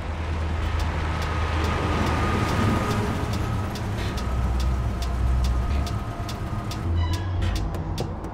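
Low rumble and tyre noise of a car driving by on a city street at night, swelling and fading in the middle. Underneath is an electronic score of light, regular ticks and a thin held tone. Near the end a brighter chime and quicker ticks come in.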